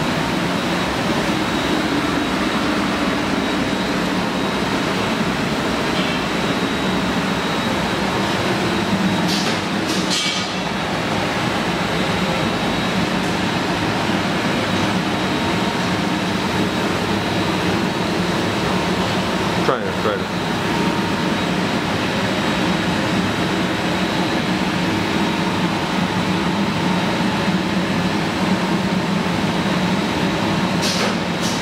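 Steady whirring and hum of a shrink-wrapping line running: a corner film sealer and its shrink tunnel with blower and conveyor. A short hiss comes about ten seconds in and a sharp click about twenty seconds in.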